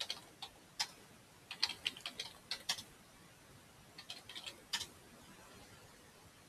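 Computer keyboard keystrokes in a few short bursts, typing a user name and password at a login prompt.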